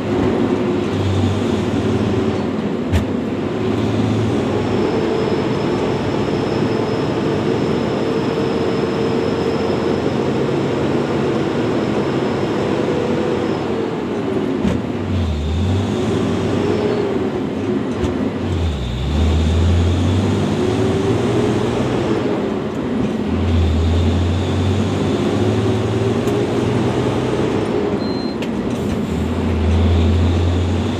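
Hino 500 truck's diesel engine running under way, heard from inside the cab, its note drifting up and down with engine speed, with stretches of heavier low rumble.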